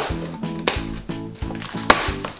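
Background music with a steady beat, over two sharp snaps, the louder one near the end: plastic packing straps on a cardboard box being cut with scissors.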